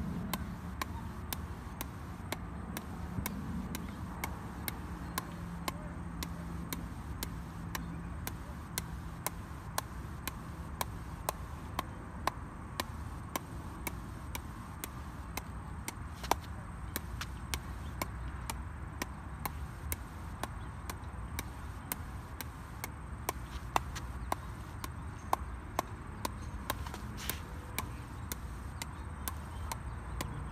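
Pickleball bouncing over and over off the edge of a pickleball paddle, a sharp tock about twice a second in a steady, unbroken rhythm, over steady background noise.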